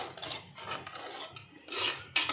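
Steel ladle stirring thick chicken curry in an earthenware clay pot, scraping against the pot in repeated strokes, with the loudest scrape near the end.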